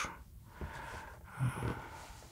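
A man's breath with a short, low vocal sound about one and a half seconds in, against quiet room tone.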